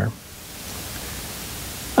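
Steady hiss that grows a little louder over the first half second and then holds even.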